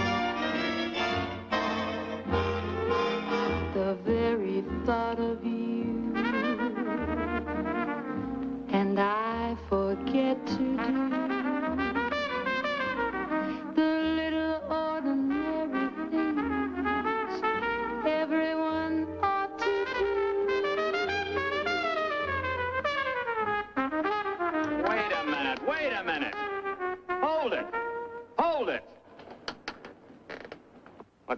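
A big dance band plays a swing number with trumpets and trombones over a steady bass beat, while a lead trumpet plays freely, with sliding bends and runs, instead of as written. The music breaks off near the end.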